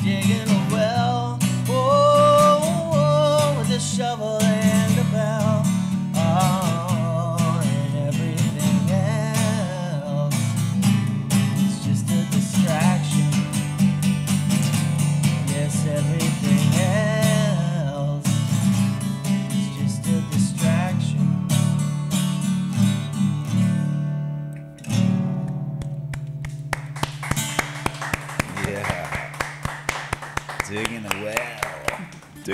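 A man singing while strumming an acoustic guitar, his voice carrying the melody through the first half. After that the guitar plays on alone, ends on a last chord about 25 seconds in that rings out, and hand clapping follows near the end.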